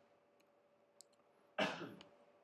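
Two faint computer mouse clicks, then a short, louder burst of noise near the end.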